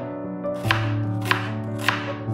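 A knife chopping vegetables on a cutting board: three sharp strokes about half a second apart, over background music.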